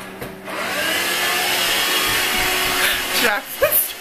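An electric motor-driven fan appliance switches on about half a second in and runs steadily, a loud whooshing noise with a faint steady whine in it.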